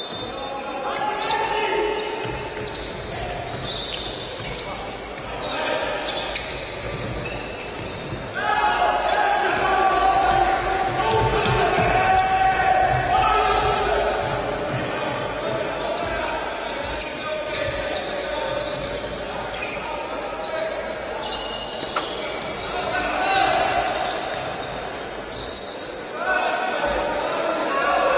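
Live basketball game in a gym: the ball bounces on the hardwood floor and there are occasional sharp knocks, while voices call and shout in the echoing hall, loudest in the middle stretch.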